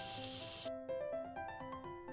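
Samosas deep-frying in hot oil in a kadhai on medium flame, a steady sizzle, under background music of repeating keyboard notes. The sizzle cuts off suddenly less than a second in, leaving only the music.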